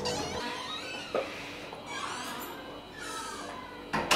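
Steel security grille gate squealing on its hinges as it is swung open, in a few high, wavering squeaks, with a short metal clack of the lock or latch about a second in.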